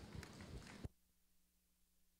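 Faint crowd applause, a patter of many small claps, that cuts off suddenly about a second in. Near silence follows, with only a low steady hum.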